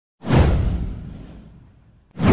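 A single swoosh sound effect with a deep rumble beneath it, starting suddenly about a quarter second in and fading away over about a second and a half.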